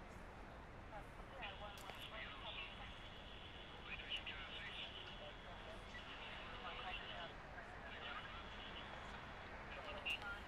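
Faint, indistinct voices under a thin, high, steady whine that starts a second or two in, breaks off about seven seconds in, and comes back briefly near the end.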